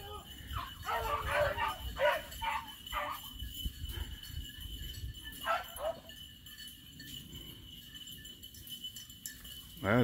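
A pack of beagles baying as they run a rabbit's trail, a string of drawn-out falling howls in the first six seconds, then quieter. The hounds are giving tongue on the scent.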